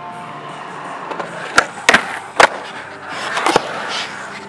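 Skateboard wheels rolling on concrete, with three sharp clacks of the board between about one and a half and two and a half seconds in. Another rolling rush builds with a further clack just before the end.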